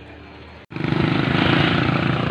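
A small motorcycle engine running, with wind rushing over the microphone, starting abruptly about two-thirds of a second in after a quieter stretch of outdoor background.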